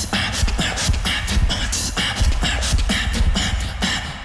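Solo human beatbox performance into a handheld microphone: a fast, dense beat of sharp vocal drum strokes over deep bass.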